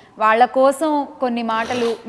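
Speech: a voice talking in conversation, with a brief rustling hiss near the end.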